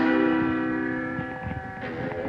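A guitar chord struck once and left ringing, fading slowly; near the end some of its notes begin to bend upward in pitch.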